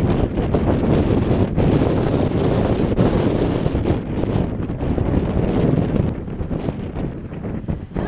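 Wind buffeting the microphone: a loud, gusty rumble with no clear calls standing out.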